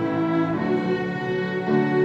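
Student string ensemble of violins, violas and cellos playing, bowing sustained chords that change every half second or so.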